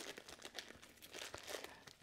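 Faint crinkling of a thin plastic bag being flipped and folded in the hands, a scatter of small crackles.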